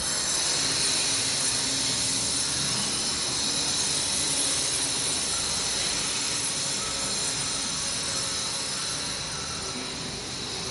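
A steady hiss with faint, thin high tones running through it and no distinct events, easing slightly towards the end.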